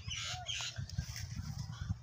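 Poultry calling faintly, a few short calls in the first second, over a low steady rumble.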